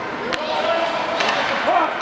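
Ice hockey play sounds: a sharp crack of stick or puck a third of a second in and a few more clacks about a second later, over voices calling out across the rink.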